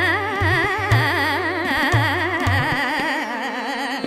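Hindustani classical khayal in Raag Bhoopali: a woman's voice sings a long phrase with rapid, continuous wavering ornaments over a steady drone. Deep tabla strokes sound through the first part and stop about two-thirds of the way in.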